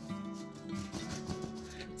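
Background music with a steady, sustained accompaniment, over a faint rubbing of a hand across sanded pastel paper, its gritty surface rasping under the palm.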